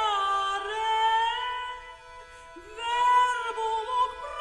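A soprano singing a medieval Latin song in early-music style over a steady instrumental drone. Her voice drops away briefly in the middle, then comes back on a rising note and holds it.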